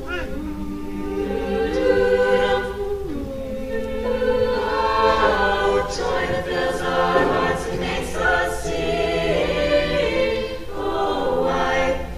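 Mixed-voice vocal ensemble singing a cappella in close harmony, holding long chords that change every second or two, with no clear words.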